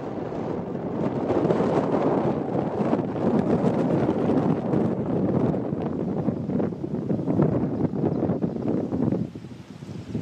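Wind blowing across the camera's microphone, a rough, uneven gusting rush that eases off just before the end.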